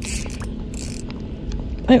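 Fishing reel being cranked while a hooked barramundi is fought, with irregular small clicks and two short bursts of hiss in the first second.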